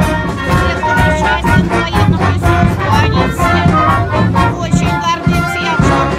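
Brass band playing, held notes of the melody over a steady beat.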